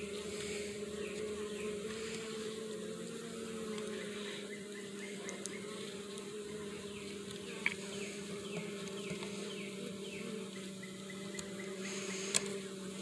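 Honeybee colony in an open horizontal hive, humming steadily in a low even drone, with one brief click a little past halfway.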